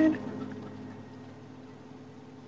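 Quiet room tone with a faint steady hum, after a girl's voice trails off at the very start.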